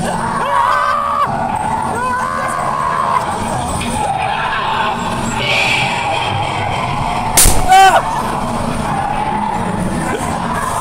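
Inside a haunted dark ride: the ride car rumbles steadily under wavering, moaning voice-like effects. About seven and a half seconds in comes a loud, sudden burst of noise with a warbling cry, the loudest sound here.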